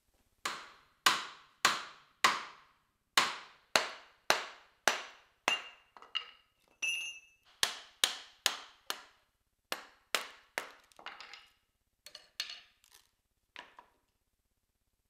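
Wooden mallet striking to split a log: a steady run of sharp knocks, about two a second, each ringing briefly. A short high ring comes in the middle, and the knocks turn lighter and more uneven near the end.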